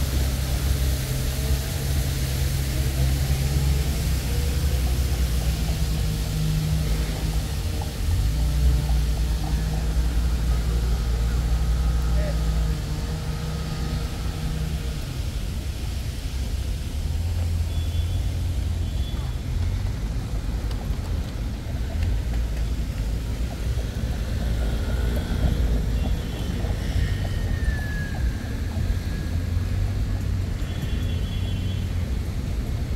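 City street ambience: a steady low engine drone from traffic and construction machinery, strongest in the first half, with passers-by talking. A few faint high-pitched squeals come near the end.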